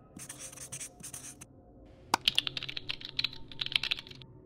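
A felt-tip marker scratching across a surface for about a second, then rapid computer-keyboard typing, a quick run of clicks starting about two seconds in.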